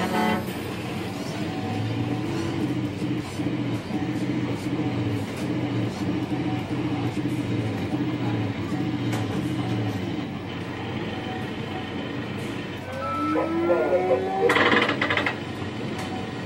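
Electronic arcade machine music: a low pitched pattern that pulses over and over, then sliding tones and a louder stretch near the end.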